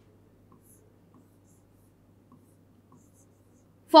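A stylus tapping and scraping faintly on an interactive whiteboard's screen as letters are written: a few faint, irregular ticks over a steady low hum.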